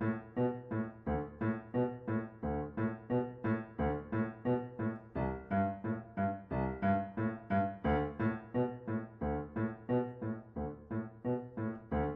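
Yamaha piano, left hand playing a steady, evenly paced trotting accompaniment of low-to-middle notes, about three a second.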